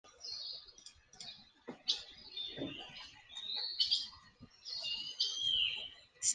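Birdsong: a series of short chirps and whistled notes in separate phrases, some gliding down in pitch.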